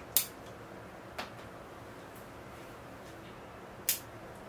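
Bonsai pruning scissors snipping through thin ficus twigs: three short, sharp snips, the first and last loudest, one about a fifth of a second in, a lighter one after about a second, and one just before the end.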